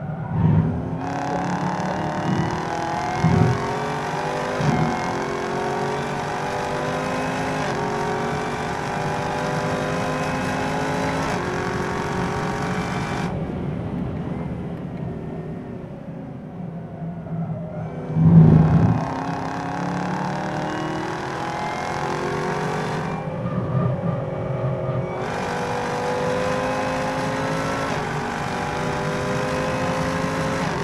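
Supercharged 6.2-litre LT4 V8 of a 2017 Camaro ZL1 pulling hard at full throttle, its pitch climbing through a string of upshifts of the 10-speed automatic. It drops back sharply about 13 seconds in as the driver lifts, with a loud thump about 18 seconds in, then pulls hard twice more.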